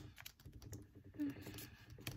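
Origami paper being pressed flat and creased by fingers on a tabletop: faint, irregular crinkles and light taps.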